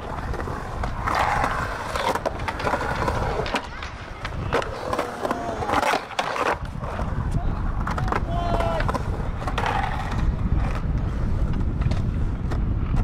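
Skateboard wheels rolling and carving across a concrete bowl, with a low rumble and several sharp clacks of the board and trucks hitting the concrete.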